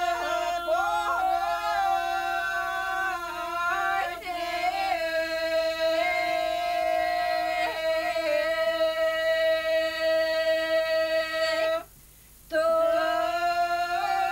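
A small group of elderly women singing a traditional Bulgarian Christmas song for kneading the ritual bread (pogacha), unaccompanied, in long held notes on a steady pitch. The singing breaks off briefly for a breath about twelve seconds in, then goes on.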